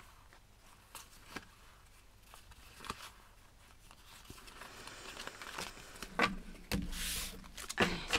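Cards in clear plastic sleeves handled and shuffled by hand: a few light clicks and crinkles at first, building to a louder rustle of cards sliding near the end.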